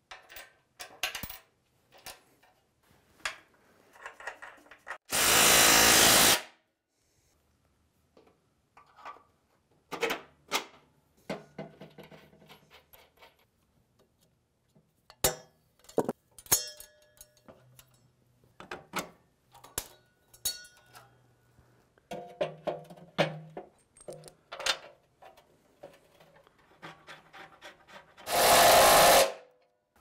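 Scattered metallic clinks and taps of bolts and hardware being fitted to a steel truck frame crossmember. Two bursts of a power tool driving bolts, each about a second long, come about five seconds in and near the end, and these are the loudest sounds.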